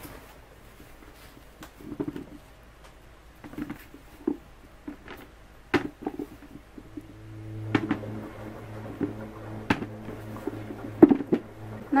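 Potatoes handled in a plastic bucket, knocking against each other and the bucket's sides in scattered short knocks. A steady low hum comes in about seven seconds in and stops near the end.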